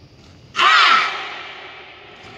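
Group of taekwondo athletes shouting a kihap together during Koryo poomsae: one short, loud yell about half a second in, ringing on in the hall's echo as it fades.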